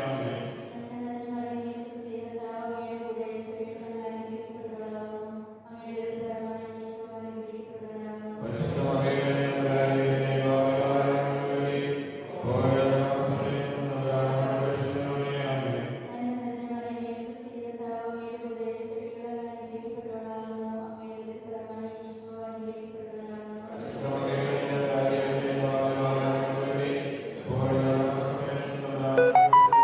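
Slow, chant-like sacred vocal music, with long held notes that move to a new pitch every few seconds and grow louder in two passages.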